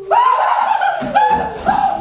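One person laughing loudly, in a run of drawn-out 'ha' syllables about two a second.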